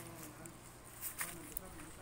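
Faint, distant voices of people talking in the background, with a few light clicks.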